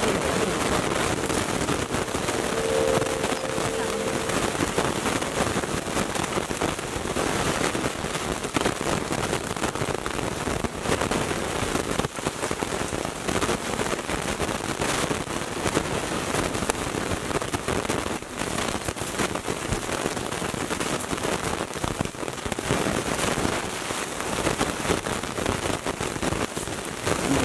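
Steady heavy rain falling, a dense continuous patter, with a brief held tone about three seconds in.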